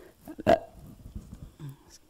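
A pause between a man's chanted phrases, holding faint mouth and breath noises and one short sharp vocal sound about half a second in.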